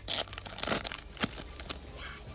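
Foil trading-card booster pack being torn open, its wrapper crinkling and tearing in two short bursts within the first second, followed by two sharp clicks.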